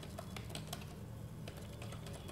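Keys being typed on a computer keyboard: a scattering of separate clicks.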